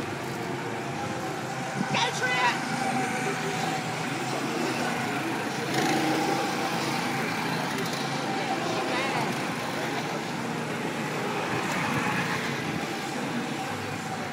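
Small go-kart engines running as karts drive around the track, with indistinct voices over them.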